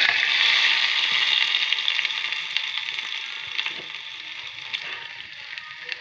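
Hot oil tempering with mustard seeds and curry leaves poured onto tomato thokku, sizzling and crackling sharply as it hits, then dying down over several seconds.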